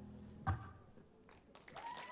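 The tail of acoustic guitar music dying away. A single sharp thud comes about half a second in, then it is quiet. Near the end the audience starts to whoop and cheer as applause begins.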